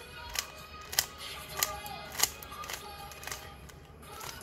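Stickerless plastic 3x3 speed cube being turned by hand, its layers clicking sharply about six times, roughly one turn every half second or so.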